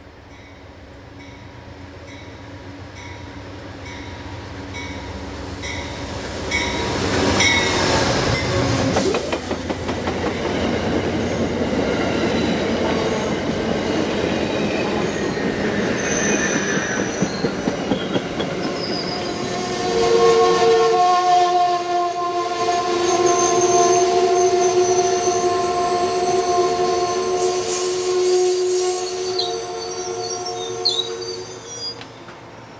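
An Amtrak passenger train led by a GE P42DC diesel locomotive approaches and passes close by. Its rumble grows steadily louder for the first several seconds and peaks as the locomotive goes by. The stainless-steel Amfleet coaches follow with wheel and rail noise. In the last third, a sustained chord of steady horn notes sounds for several seconds as the coaches keep rolling past.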